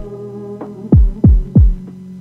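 The end of a hip-hop beat: three deep bass-drum hits in quick succession about a second in, each dropping in pitch, over sustained tones that fade out.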